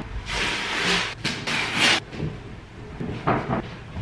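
A large rug being unrolled and dragged flat across a wooden parquet floor: several rustling, scraping sweeps in the first two seconds, then a few shorter rustles a little past three seconds.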